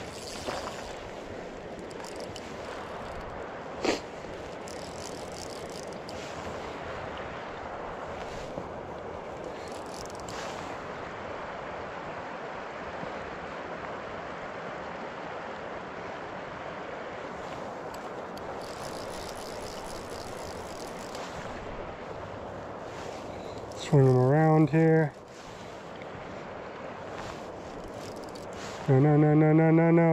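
Steady rush of river water over a shallow riffle, with a single sharp click about four seconds in. A man's voice cuts in briefly twice near the end.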